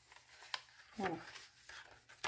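Faint rustling of paper pages being handled, with one sharp light tap about half a second in.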